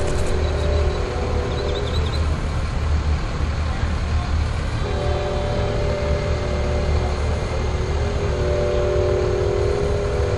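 A fire engine's diesel engine running steadily as it backs slowly into its bay. Over it, a distant train horn sounds in long held blasts, one at the start and another from about halfway through.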